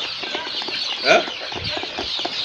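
A flock of chickens in a poultry house, clucking and cheeping continuously, with one louder falling call about a second in.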